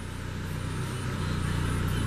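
1996 Saab 900 SE turbo's four-cylinder engine idling steadily with no odd noises, slowly getting a little louder.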